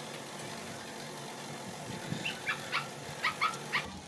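A dog giving about six short, high yips in quick succession during the second half, over a faint steady hiss.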